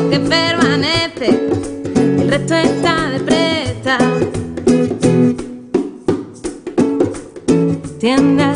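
Classical nylon-string guitar strummed in a rhythmic pattern with sharp percussive strokes, with a woman singing over it in the first half; the second half is guitar alone.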